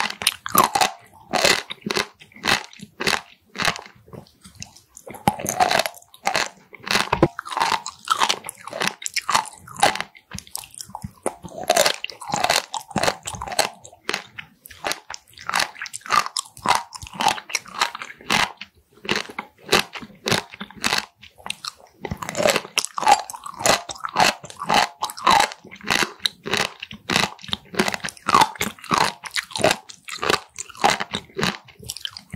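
Close-miked chewing of raw Styela plicata (water sea squirt): a continuous run of quick, sharp, clicking bites and chews, pausing only briefly between mouthfuls.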